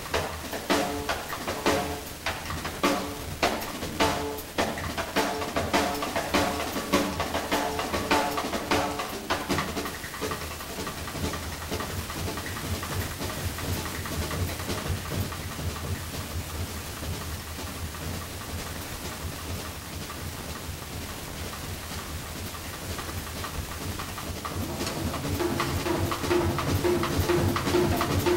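Jazz drum kit played live with sticks: busy strikes on drums and cymbals for about the first ten seconds, then lighter playing with more cymbal wash. A held pitched note comes in near the end.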